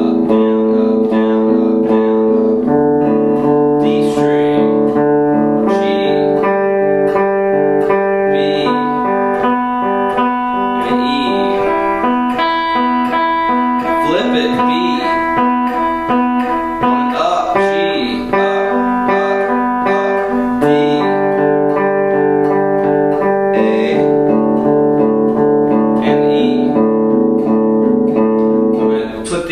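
Telecaster-style electric guitar played with a pick, inside picking: alternating down and up strokes on a pair of adjacent strings, starting down on the A string. Steady picked notes, with the pattern shifting every few seconds as it moves to the next pair of strings.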